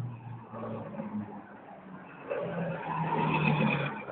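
A motor vehicle on the street, its engine getting louder over the last second and a half and then cutting off abruptly.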